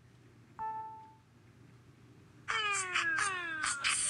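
Alexa answering through the Fire 7 tablet's small speaker. A short electronic chime comes about half a second in. From about two and a half seconds there is a run of quick electronic sweeps, each falling in pitch and repeating roughly every half second, as the requested beatbox response begins.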